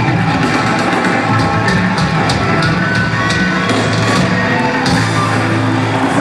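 Heavy metal band playing live through a stadium sound system: distorted guitars, bass and drums on sustained chords, with repeated cymbal crashes.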